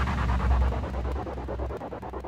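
Electronic music dying away: a fast, even pulsing sound over a low hum, fading steadily.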